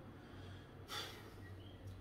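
Faint room tone with a steady low hum, and one short audible breath, like a sniff or sigh, about a second in.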